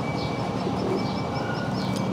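Outdoor city-street background: a steady low traffic hum with a faint steady high tone and a quick, regular high-pitched chirping, about four or five chirps a second.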